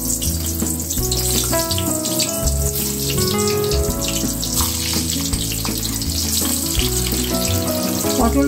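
Background music with held notes that change about once a second, over the steady hiss and crackle of pointed gourds (potol) frying in hot oil in a wok.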